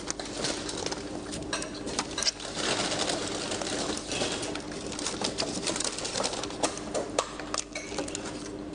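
Paper takeaway bags and food wrappers rustling and crinkling in irregular bursts as food is handled, over a steady low hum.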